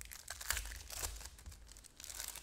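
Foil wrapper of a football trading-card pack crinkling and tearing as it is ripped open by hand, a quick irregular run of crackles.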